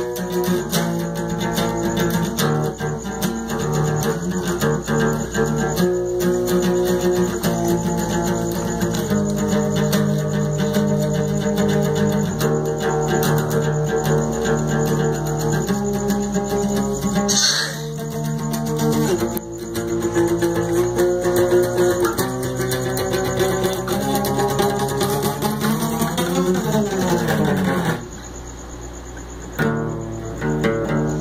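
Steel-string acoustic guitar played in chords, with a short break about halfway through, stopping about two seconds before the end.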